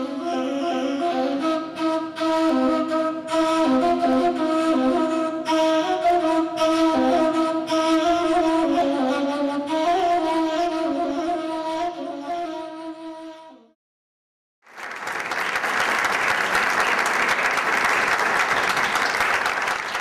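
A Persian ney (end-blown reed flute) plays a solo melody of held notes in the Chahargah mode, stopping about two-thirds of the way in. After a second of silence, an audience applauds.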